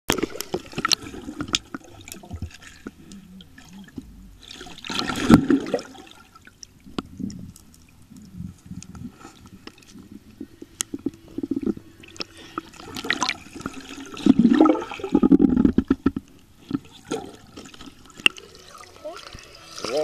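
Muffled underwater sound in a swimming pool: water rushing and bubbling with scattered clicks, surging loudest around five seconds in and again from about thirteen to sixteen seconds.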